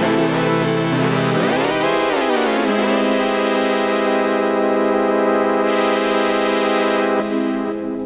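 Arturia iSEM software synthesizer, an Oberheim SEM emulation, playing a sustained pad chord from an iPad's on-screen keyboard. A little over a second in, the notes swoop up in pitch and back down, then the chord holds steady and eases off slightly near the end.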